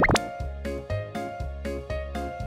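Children's background music with a steady beat. Right at the start a cartoon plop sound effect sweeps quickly in pitch.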